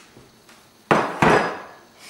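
A glass mixing bowl set down on a hard countertop: two sharp knocks about a third of a second apart, a little under a second in.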